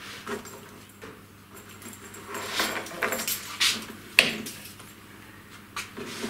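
Plastic cable drag chain and wiring loom being handled, with irregular rattles and clicks from the chain links and a sharp click a little after four seconds.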